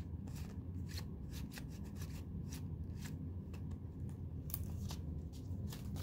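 Pop-up book being handled: many quick, irregular light clicks and rustles of card and paper as its pop-up parts are worked and a page is turned, over a low steady hum.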